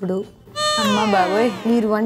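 A woman talking, with a high, meow-like cry laid over her voice. The cry starts about half a second in and slides down in pitch over roughly a second.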